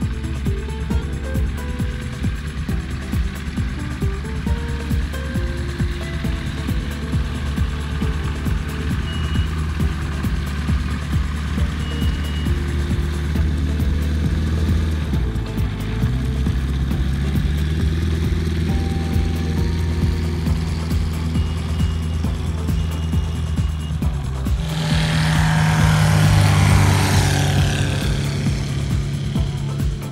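A light aircraft's piston engine and propeller running steadily as the small plane taxis on grass. The engine note dips briefly about halfway, then settles again, and grows much louder for a few seconds near the end. Background music plays along throughout.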